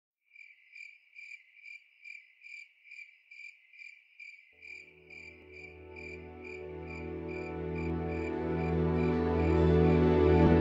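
Intro of a dark progressive psytrance track: a high cricket-like chirp repeats evenly about twice a second. About halfway in, a low sustained drone enters beneath it and swells steadily louder.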